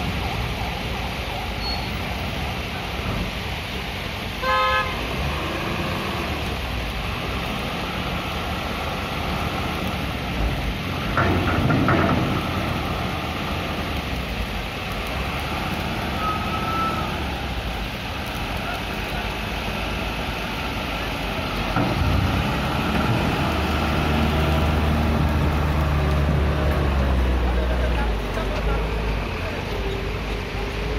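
Truck engines running as loaded trucks drive off a river ferry onto the landing ramp. A short horn toot sounds about four seconds in, and a heavy engine close by grows louder and rumbles for several seconds near the end.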